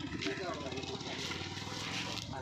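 Men's voices talking over the steady low rumble of an engine running close by.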